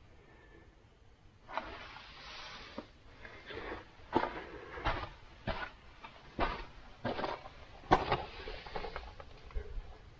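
Footsteps crunching on the loose gravel and rock floor of a mine tunnel, a step about every 0.7 seconds, starting about a second and a half in.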